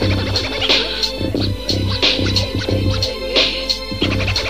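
Instrumental hip hop beat, drums and bass in a steady rhythm, with turntable scratching over it and no rap vocals yet.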